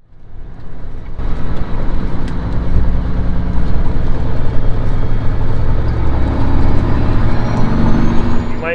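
Kenworth W900L semi truck's diesel engine pulling a grain trailer down a dirt road, a loud rumble with wind on the microphone, the engine note climbing near the end as it gathers speed.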